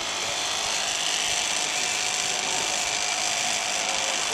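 Electric shrink-wrap heat gun running steadily, its fan giving an even whirr with a constant hum, as it heats the plastic-and-foil capsules to shrink them over the corked wine bottles.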